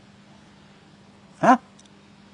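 A man's single short "ha?" with rising pitch about one and a half seconds in, over a faint steady hum.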